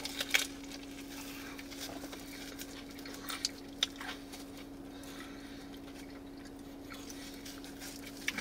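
A person chewing a mouthful of sandwich, with a few soft wet mouth clicks in the first half, over a steady faint hum.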